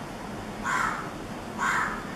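A bird calling twice, two short calls about a second apart.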